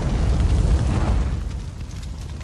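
Fireball sound effect for a video flame transition: a loud rumbling whoosh of flame noise with a deep low end, peaking about a second in and easing off a little toward the end.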